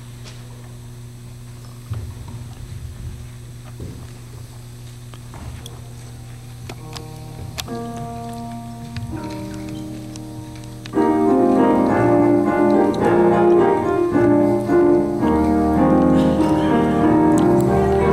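Piano introduction to a Christmas song: a low steady hum at first, a few soft held notes from about seven seconds in, then the full piano part, much louder, from about eleven seconds in.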